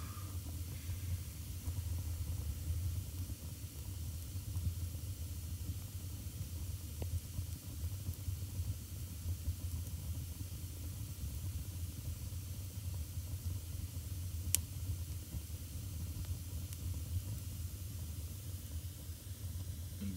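Wood fire burning in a firebox, a steady low rumble with a hiss, and a single sharp crackle from the burning logs about three-quarters of the way through.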